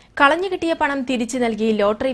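Speech only: a woman reading the news to camera in a steady, even voice.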